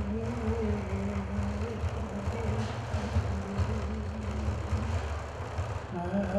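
Large Innu hide frame drum beaten in a steady, rapid pulse, with a man's low chanting voice holding wavering notes over it, clearest in the first couple of seconds.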